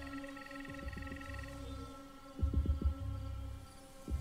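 TV drama soundtrack: a low, held musical drone, with a quick run of deep thuds a little past halfway through.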